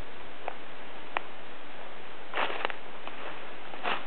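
Steady rushing of a rocky creek running through the gorge below, an even hiss of water. Two faint ticks come in the first second and a brief rustle about two and a half seconds in.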